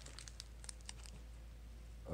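Faint crinkling of a thin clear plastic wrapper around a small metal lapel pin being handled, a few light crackles in the first second, then quieter.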